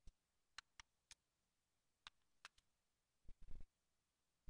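Near silence broken by a few faint, scattered small clicks, then a brief cluster of soft knocks about three and a half seconds in: the small sounds of a brush and paint being handled at the palette.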